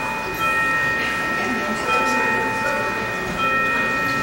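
Church organ holding sustained chords, with new notes sounding about every second and a half, over the murmur of a congregation talking.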